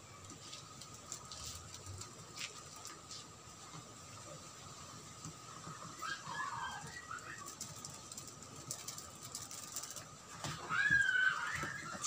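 Faint background with a steady high whine, and brief bird calls about six seconds in and again near the end.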